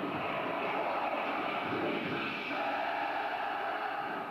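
Theatre sound effect of a dragon exploding: a long, loud, steady roar of noise played through the stage sound system, starting to die away near the end.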